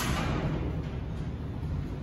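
Steady low room rumble, with a brief rustle or bump right at the start that fades within half a second.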